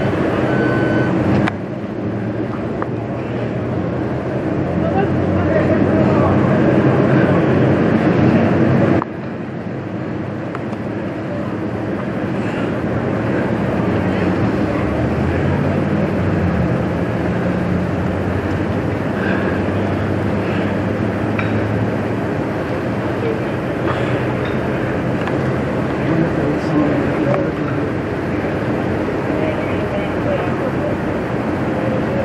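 Fire-apparatus engines running steadily, with indistinct voices. The sound drops suddenly about one and a half seconds in and again about nine seconds in.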